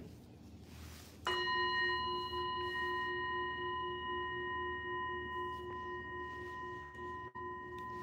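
A singing bowl starts ringing suddenly about a second in. It holds a steady tone made of several overtones, which fades only slowly.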